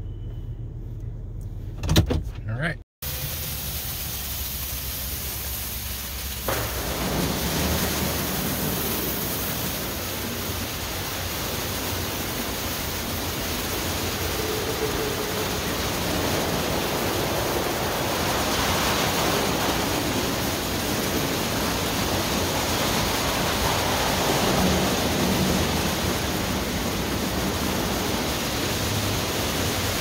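Ryko SoftGloss XS rollover car wash running over a pickup: a steady rush of water spray and spinning brushes, growing louder about six seconds in. Before it, a low rumble inside the truck's cab with a sharp thump about two seconds in.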